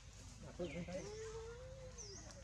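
Macaque calling: short squeaky cries, then one long whining note held for nearly a second.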